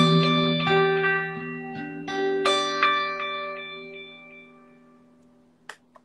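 Electric guitar played through a pedalboard and Line 6 HX Stomp: a sustained chord with a few more notes picked over it in the first three seconds, all left to ring and fade almost to silence. A single short click comes just before the end.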